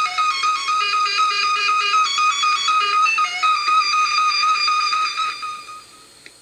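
A fast, bright little tune of quick high notes played off the 2-XL robot's 8-track tape through its small built-in speaker. It fades out near the end.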